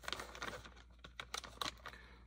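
Plastic soft-bait packages being handled on a table: scattered light clicks and crinkles of the plastic bags.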